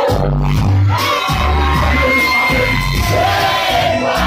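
Live dancehall performance heard through a club PA: loud music with a heavy, pulsing bass line and a singing voice, over the noise of a large crowd.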